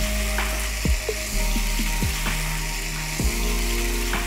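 Raw marinated minced chicken sizzling steadily in hot oil in a non-stick frying pan, just after going in, with background music underneath.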